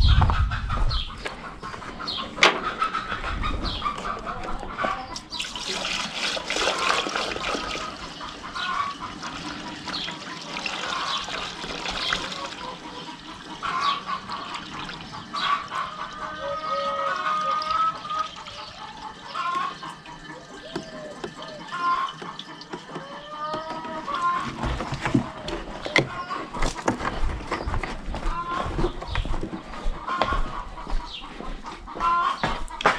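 Fuel glugging from a large plastic jug through a funnel into a UTB tractor's fuel tank, a rushing pour through the middle stretch. Chickens cluck repeatedly around it, with occasional knocks of handling.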